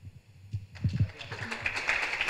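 A few low thumps, then audience applause that starts about halfway through and builds.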